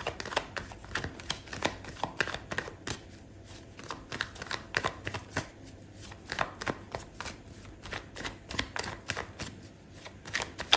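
A deck of tarot cards being shuffled by hand: a quick, irregular run of soft card clicks and flicks, several a second.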